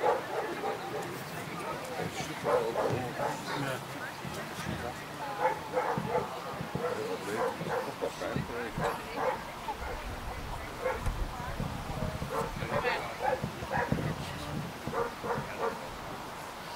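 German Shepherd whining and yipping repeatedly while heeling: short pitched calls that slide up and down, coming in quick runs throughout.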